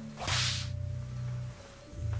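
A single quick whoosh about a quarter of a second in, over background music of held low notes.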